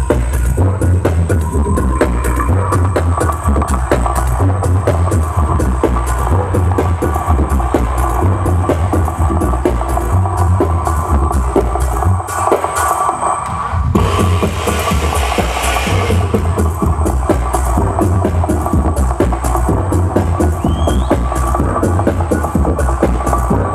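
Electronic dance music from a DJ set, played loud through a festival sound system, with a steady pounding kick drum and bass. About twelve seconds in, the kick and bass drop out for a short break. They return about two seconds later under a brief hissing sweep.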